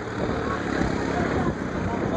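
City street ambience: a steady rumble of traffic with faint voices of passers-by.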